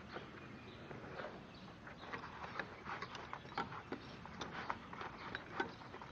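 Faint rustling and scattered light clicks and taps of tools being handled in the pockets of a nylon tool belt.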